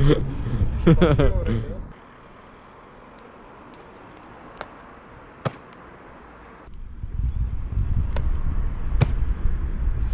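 A man laughing for a couple of seconds, then a quiet stretch broken by a few sharp clicks, and from about seven seconds in a steady low rumble outdoors.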